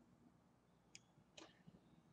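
Near silence: room tone, with two faint clicks about a second in and about half a second later.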